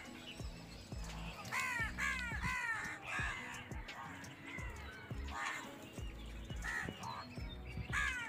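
Birds calling: a quick run of three calls about one and a half seconds in, then a few single calls later, over a low steady background.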